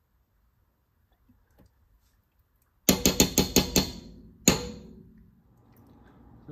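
A metal spoon tapped against the rim of a stainless steel saucepan: a fast run of about six sharp, ringing taps starting about three seconds in, then one more tap half a second later.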